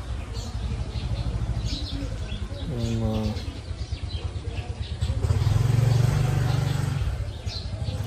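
A motor vehicle's engine running with a low, fluttering rumble, swelling louder for a couple of seconds in the second half as it passes, while small birds chirp.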